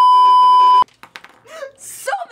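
A loud, steady 1 kHz test-tone beep of the kind played with colour bars. It lasts about a second and cuts off abruptly.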